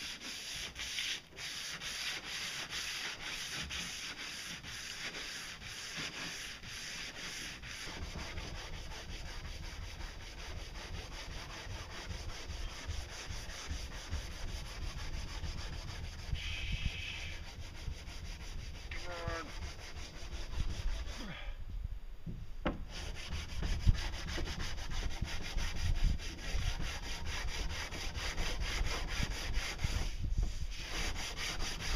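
Sandpaper rubbed by hand along a fiberglass boat pontoon hull, steady rasping strokes, with a short break about two-thirds of the way through.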